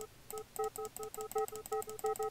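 Granular synthesis from a Max 7 patch: 100-millisecond grains of a sampled sound played in quick succession, about eight short pitched blips a second, starting about a third of a second in. Each grain starts at a random point within the selected range of the sample, so the blips vary slightly in loudness.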